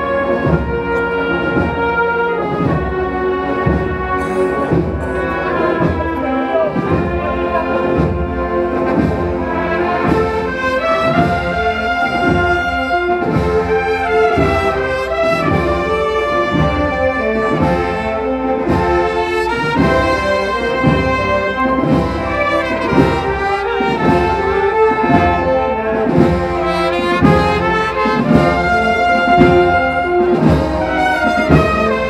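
Brass band playing a Spanish Holy Week processional march: trumpets and trombones carrying the melody over a steady, slow drum beat.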